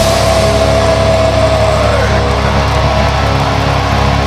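Blackened death metal band's distorted electric guitars and bass holding a ringing, sustained chord after the drums stop. A high held note slides downward about halfway through.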